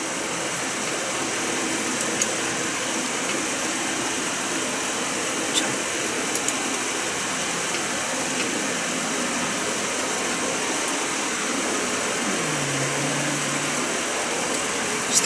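Steady rushing background noise of the kind a running fan or air conditioner makes, with a few faint clicks. Near the end there is a short low hum.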